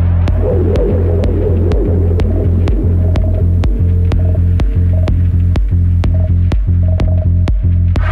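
Bass-heavy electronic dance music from a live DJ mix: a loud, deep sustained sub-bass with brief dips under a steady pattern of sharp percussion hits, about two to three a second, with a warbling synth line in the first few seconds.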